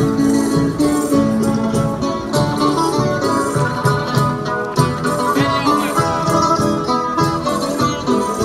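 Folk string group of strummed and plucked guitars playing an instrumental passage of a berlina, a Canarian folk dance tune.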